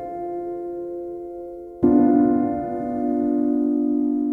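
Slow, soft meditation music of sustained chords, with a new chord struck a little under two seconds in, left to ring and fade.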